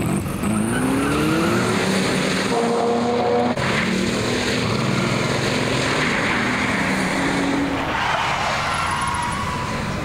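Bugatti Veyron's W16 engine accelerating hard: its note climbs in the first second or two, then holds a steady high-speed note.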